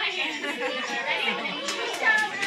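Indistinct chatter of several voices, children and adults, talking over one another in a room.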